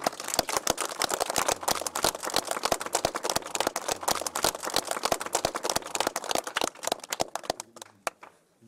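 A small group clapping, many separate hand claps overlapping in a dense, irregular patter that thins out and stops just before the end.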